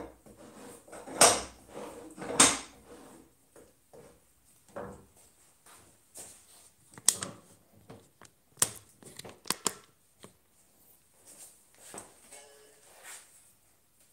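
Knocks and clicks of hands moving a wooden workpiece, tools and the camera around on a wooden workbench. Two louder knocks come a second apart in the first few seconds, then a run of short sharp clicks near the middle.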